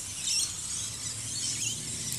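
Outdoor background: a steady high hiss of insects with a few faint, scattered chirps.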